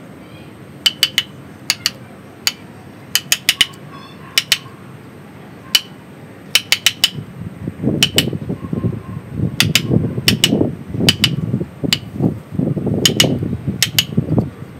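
A steel chisel working mini banyan bonsai roots: sharp taps with a short metallic ring, in quick clusters of two to five. From about eight seconds in, a rough scraping of the blade gouging the roots joins the taps.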